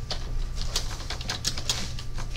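Typing on a computer keyboard: irregular runs of quick key clicks, over a steady low hum.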